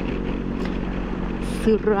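BMW R 1250 GS boxer-twin engine running with a steady low hum while the motorcycle climbs a wet road, under an even rush of road noise.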